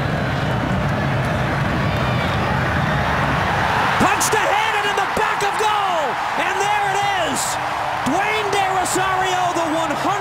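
Stadium crowd noise that swells into a roar of cheering about four seconds in as a goal goes in, with long, rising-and-falling shouted calls over the roar from then on.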